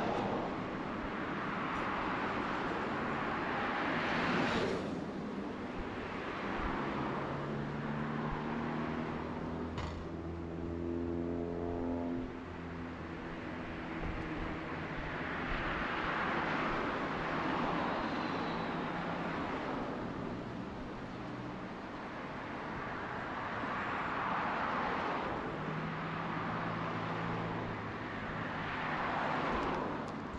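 Road traffic on a multi-lane city road: cars passing one after another, each a swell of tyre and engine noise that rises and fades over a few seconds. Through the middle a steadier engine hum sits under the passing cars.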